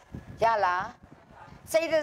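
Only speech: a woman's voice in two short, strongly inflected phrases with a pause between them.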